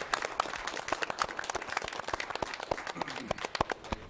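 Audience applauding: a dense patter of hand claps that thins out somewhat toward the end.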